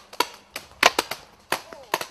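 Paintball marker firing single shots: about five sharp pops at uneven intervals.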